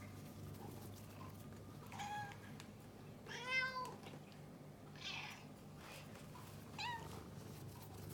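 Domestic cats meowing three times: a short meow about two seconds in, a longer, louder meow that rises and falls in pitch around the middle, and a brief one near the end.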